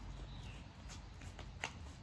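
Light footsteps of sneakers on a concrete driveway, a few faint separate taps of a man jogging, over a low steady outdoor rumble.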